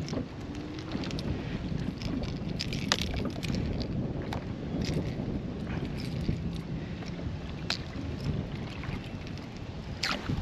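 Wind buffeting the microphone over water lapping at a kayak's hull, with scattered small clicks and splashes as a caught striped bass is held at the water's surface.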